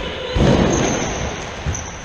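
A loud rumbling boom that comes on suddenly and dies away over about a second, echoing in a large sports hall, with a short sharp knock just before it and another near the end.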